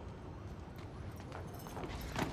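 Footsteps on stone paving, a few hard-soled steps in the second half, over a low steady background rumble.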